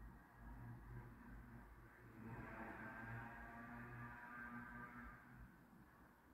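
Near silence, with a faint steady hum from a distant car engine that comes in about two seconds in and fades before the end.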